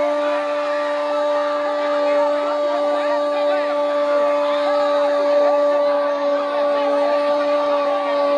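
A football commentator's long held "Gooool" shout, one unbroken note at a steady pitch, over a background of crowd voices.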